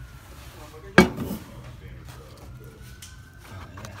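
A single sharp knock of hard kitchenware about a second in, amid light handling sounds while tea is strained through a paint strainer bag.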